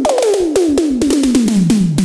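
Electronic tom drums from the VPS Avenger synthesizer playing a fill, panned left and right: each hit drops sharply in pitch. The hits speed up right at the start to about eight a second and step steadily lower in pitch.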